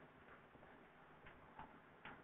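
Near silence with a few faint ticks of chalk on a blackboard as a short arrow is drawn.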